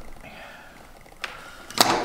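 Braided rope and sewing thread being handled on a table: a faint rustle, a small click just past a second in, then a short, louder sharp sound near the end as the rope is pulled.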